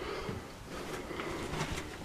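Quiet room tone in a small, empty room, with a few faint soft knocks.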